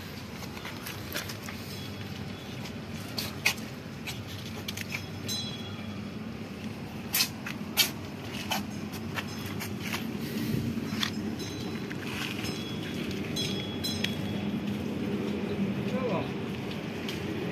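Faint murmur of distant voices over a steady low background, with a few sharp clicks and knocks, the loudest about three and a half, seven and eight seconds in.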